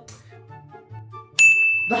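A single bright bell-like ding, a sound effect struck sharply about one and a half seconds in and ringing on for just under a second, over faint background music.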